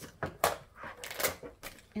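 Cardboard and plastic toy packaging being torn open and handled, a few sharp crackles and rustles, the loudest about half a second in.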